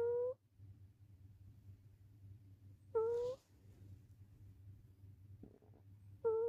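Sleeping cat snoring in a steady rhythm, with a short, high, whistling note on the breath about every three seconds: twice here, once at the start and once about three seconds in.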